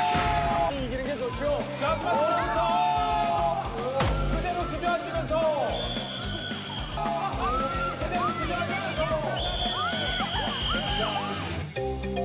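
Excited shouting and cheering from onlookers during a ssireum bout, over background music, with a sharp hit about four seconds in.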